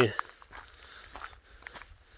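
Footsteps on a gravel track: a series of faint, irregular crunches as someone walks, following the end of a spoken word at the very start.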